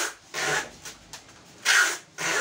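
Rhythmic rubbing strokes at a workbench: a stronger stroke and then a weaker one, repeating about every two seconds, like hand filing or sanding on wood.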